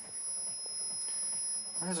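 Steady high-pitched electronic whine with a faint low hum underneath, from a running battery-driven high-voltage pulse circuit (Bedini-style motor driver with ignition coil) as it charges a capacitor.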